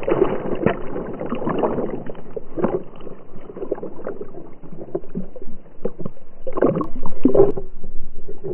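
Water splashing and sloshing around a swimming dog, heard close up from a camera strapped to the dog's back, in irregular bursts, with louder splashes near the end as the dog comes out onto the bank.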